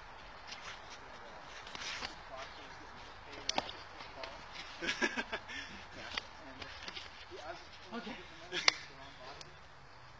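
Several sharp hand slaps from two people sparring in play, the loudest near the end, with short bursts of laughter in between.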